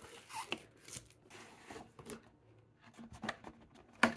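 Faint, intermittent rustling and scraping of cardboard packaging as a game box's inserts and a cardboard token tray are pulled out and handled.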